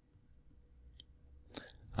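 Near silence with faint room tone, a faint tick about halfway through, then a sharp click shortly before speech resumes.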